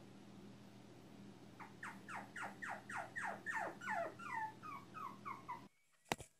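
A small animal whining in a quick run of about a dozen short cries, about three a second, each falling in pitch. They start after a second or two and stop suddenly near the end, over a low steady hum.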